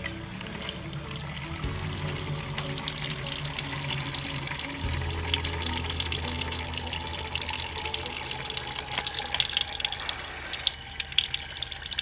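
Water draining in a steady stream from the brass drain valve at the bottom of a clear Chapin Hydro Feed fertilizer-injector canister, splashing onto concrete as the canister is emptied before it is charged with soap.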